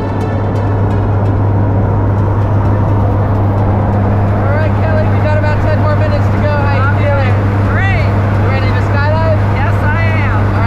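Jump plane's engine and propeller drone heard inside the cabin on the climb: a loud, steady low hum. From about halfway through, voices and laughter ride over it.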